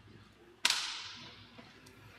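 A single sharp crack about half a second in, trailing off in a hiss that fades over about a second.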